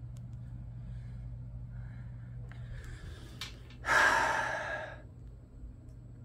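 A man draws a faint breath and then lets out a long, heavy sigh about four seconds in, lasting about a second, over a steady low hum.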